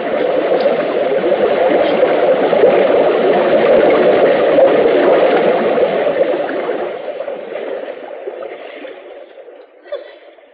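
Radio-drama sound effect of rushing water as a rowboat is swept by a fast current through a low rock arch: a loud rushing noise that builds for the first few seconds, then fades away over the last four, with a short click near the end.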